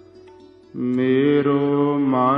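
Sikh Gurbani kirtan. After a brief hushed pause, a singer and harmonium come in about three-quarters of a second in on a long held note, with a short melodic turn near the end.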